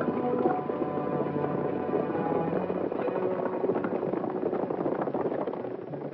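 Hoofbeats of a group of horses riding off, a dense clatter that eases off near the end, with film score music fading beneath it.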